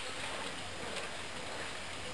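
Steady background hiss with a low hum and no distinct event, apart from one faint click about a second in.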